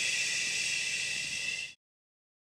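A loud, steady hiss like a long drawn-out 'shhh', cut off suddenly near the end.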